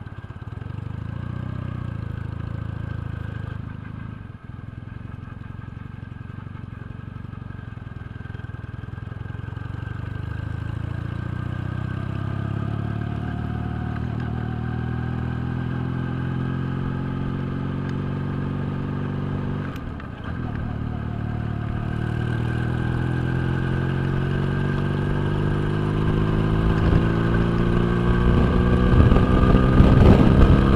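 Regal Raptor Spyder 250 motorcycle engine heard from the saddle while riding, its pitch climbing gradually as it accelerates. About twenty seconds in the revs dip briefly, as at a gear change, then climb again, growing louder toward the end with a low wind rumble.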